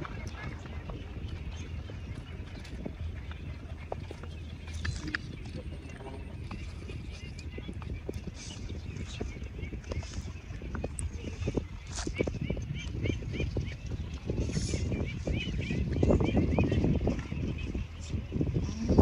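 Roasted duck egg being peeled by hand: scattered small crackles and clicks of the shell coming away. Near the end come the mouth sounds of eating it. A low steady rumble and, in the middle, a run of small quick chirps sit in the background.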